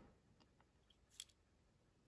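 Near silence with a few faint small clicks, one a little sharper just past a second in, from handling the tiny plastic rifle and rifle grenade of a 1/6-scale action figure.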